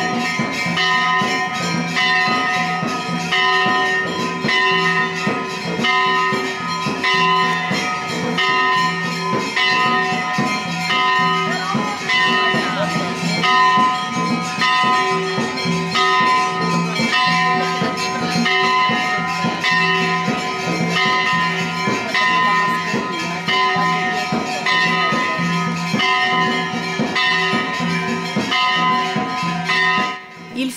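Many temple bells rung continuously, a dense, unbroken clanging that holds a few steady ringing pitches under rapid repeated strikes.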